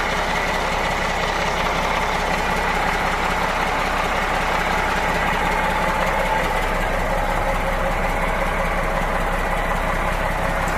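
Mack AI-427 inline-six diesel of a 2005 Mack Granite truck idling steadily.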